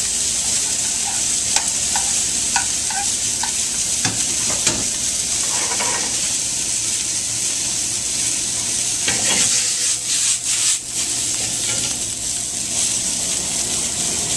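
Scallops and flour-dusted flounder fillets searing in a hot stainless sauté pan on a gas burner, a steady sizzle of fat, with a few light clicks and knocks of metal on the pan.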